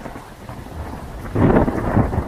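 Thunder sound effect: a rumble that starts suddenly and swells louder about one and a half seconds in.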